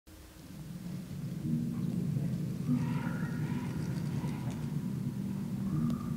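Low rolling rumble of thunder, a storm sound effect that fades in over the first second or so and then holds steady.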